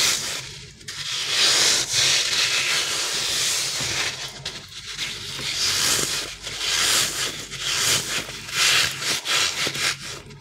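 Hands squeezing and rubbing a soft rubbery crocodile squishy toy close to the microphone: a run of irregular rubbing strokes, roughly one a second, with brief pauses between them.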